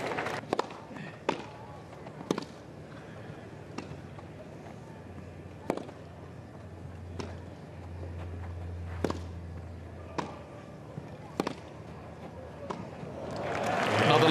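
Tennis rally: rackets striking the ball back and forth, a sharp pop every second or so, over a hushed crowd.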